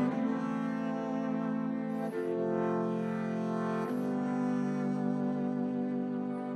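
The 3Dvarius 3D-printed electric violin, amplified, bowed in long sustained low notes. The note changes about every two seconds.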